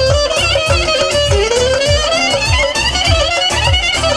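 A clarinet plays an ornamented, sliding Balkan kyuchek (çoçek) melody over a steady, loud bass-drum beat of about two to three strokes a second.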